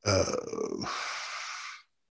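A man's drawn-out, low-pitched 'uh' that trails off into a long breathy exhale, lasting nearly two seconds.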